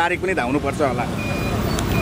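Road traffic noise: a steady low engine rumble, with a faint, thin, steady high tone over it in the second half.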